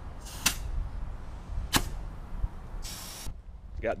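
Two short hisses of air at a trailer tire's valve stem as a tire pressure gauge is pressed on and pulled off, with a sharp click in the first hiss and another about a second later.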